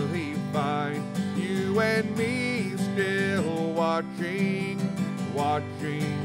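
A man singing a hymn, holding long notes, over a strummed acoustic guitar.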